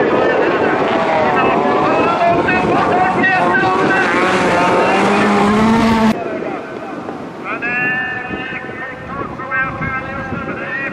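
Several bilcross race cars' engines revving hard, their pitch rising and falling with throttle and gear changes. The sound cuts off suddenly about six seconds in, leaving fainter engines revving in the distance.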